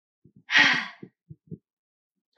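A woman's loud, breathy intake of breath, a single gasp lasting about half a second, followed by a few faint low clicks.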